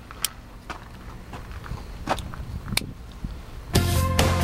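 A few scattered footsteps on gravel with sharp clicks between them, then music starts suddenly near the end.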